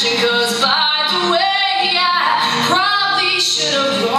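A girl singing a self-written acoustic pop song live, holding long, wavering notes over her own acoustic guitar accompaniment.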